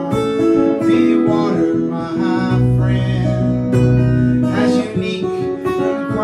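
A man singing over a strummed Martin acoustic guitar, with held sung notes and chord changes throughout.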